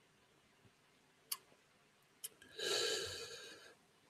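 Mostly very quiet, with a small click about a second in and another just after two seconds, then a soft breath lasting about a second.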